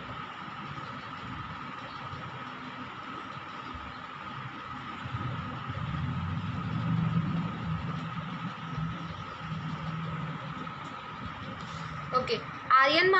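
Steady background hiss with a faint steady tone through a video-call microphone, joined by a low engine-like rumble that swells from about five seconds in and eases off near the end.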